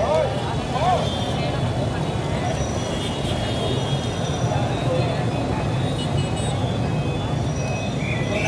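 Busy street noise: a steady low rumble of passing traffic, with several people talking at once, a voice clearest about a second in.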